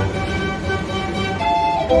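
Merry-go-round music played on a fairground organ, with a new phrase of notes coming in about a second and a half in.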